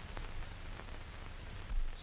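Steady hiss and low hum of an old film soundtrack, with a couple of faint clicks.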